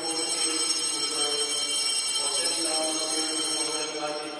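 Bells ringing continuously, a dense high shimmering ring that starts suddenly and cuts off just before the end, with a voice faintly underneath.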